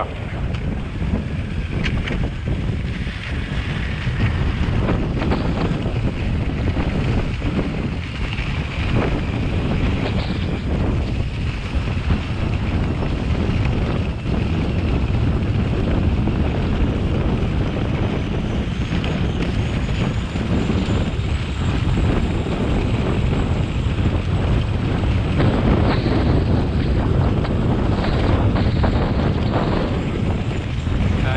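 Wind rushing over the microphone of a skier moving fast downhill, with forest skis scraping over a frozen, icy snowmobile track. A loud, steady rush with small scrapes and rattles scattered through it.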